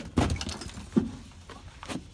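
Three sharp knocks and clatters of hard objects, about a second apart, the first the loudest.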